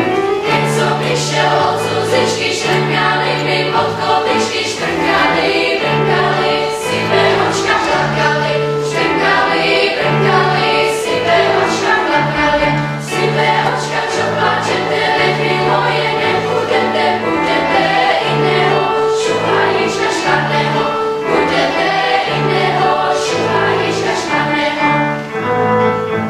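Children's choir singing in parts with piano accompaniment, the piano keeping a steady repeating low figure under the voices.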